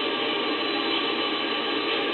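Small powered loudspeaker playing a steady hiss with faint hum, the relayed audio feed from the remote monitoring stations.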